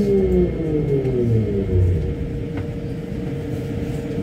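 Rubber-tyred VAL automated metro train braking into a station: its electric traction drive whines down in pitch over the rumble of the running gear. About halfway through the falling whine gives way to a steady hum as the train comes to a stop.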